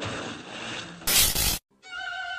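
Cartoon water splashing, a rushing noise without any tune. About a second in comes a louder, harsher burst of noise for about half a second, which cuts off suddenly into a brief silence.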